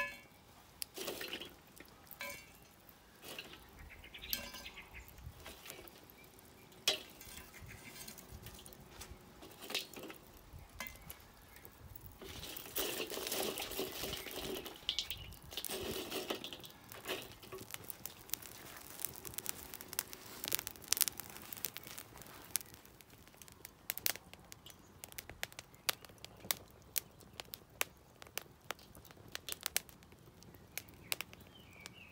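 Hot coals being set by gloved hand onto the cast-iron lid of a hanging Dutch oven: irregular clinks, knocks and scrapes, with a busier stretch of scraping and rustling around the middle and a run of sharp clicks and crackles later on.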